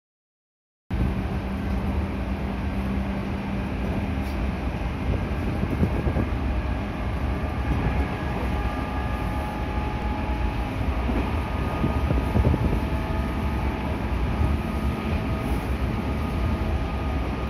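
Running noise inside a JR Central 211 series electric commuter train under way: a steady, low-heavy rumble that starts abruptly about a second in.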